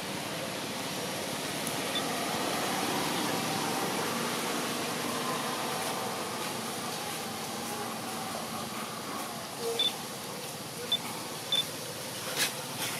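Steady outdoor background noise with faint, indistinct distant voices, and a few short high chirps near the end.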